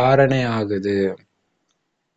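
A man's voice speaking, stopping a little over a second in, followed by silence.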